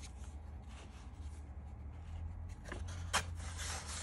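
Paper-bag and cardstock scrapbook pages rustling and rubbing as they are handled and turned by hand. The rustling is faint at first and louder from about three seconds in, with one sharp papery snap, over a steady low hum.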